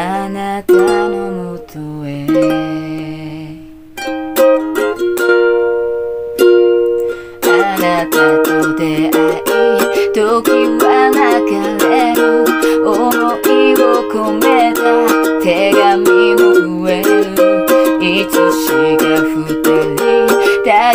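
Ukulele playing: a few chords struck and left to ring out over the first several seconds, then steady rhythmic strumming from about seven seconds in.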